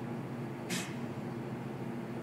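A steady, low mechanical hum from running kitchen equipment. A brief hiss comes about three quarters of a second in.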